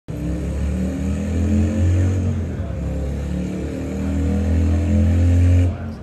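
Harley-Davidson FXDR 114's Milwaukee-Eight 114 V-twin running with a deep rumble, revved up twice, then stopping abruptly near the end.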